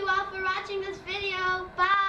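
A young girl's voice in drawn-out, sing-song syllables, about four long held notes with short breaks between them.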